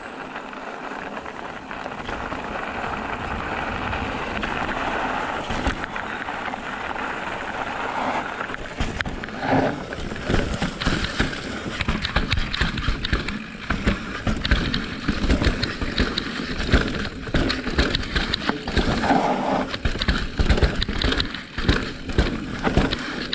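Specialized Turbo Levo electric mountain bike riding over a gravel and leaf-covered dirt trail: a steady rush of tyre and wind noise that builds over the first few seconds. From about eight seconds in the ride turns rough, with frequent knocks and rattles from the bike over bumps.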